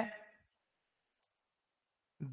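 Near silence after a man's voice trails off, with one faint, short click about a second in.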